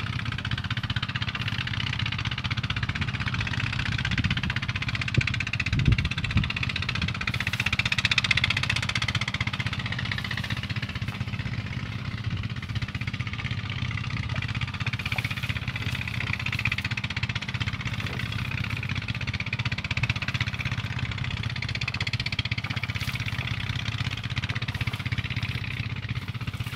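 A small engine running steadily at an even speed, with a hiss above it and a couple of low thumps about six seconds in.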